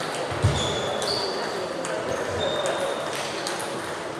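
Table tennis balls pinging off tables and bats from several games at once, a quick, irregular series of short, bright clicks, over a murmur of voices in the hall. One louder thump comes about half a second in.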